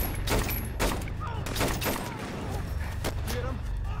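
Gunfire in a firefight: a rapid, irregular series of shots, several a second, over a low steady rumble. A man grunts about a second in.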